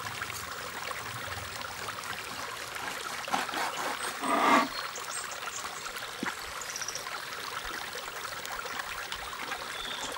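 Onions, garlic and green beans sizzling in hot oil in an enamel pot as a wooden spoon stirs them: a steady crackling hiss, with one louder stroke of the spoon about halfway through.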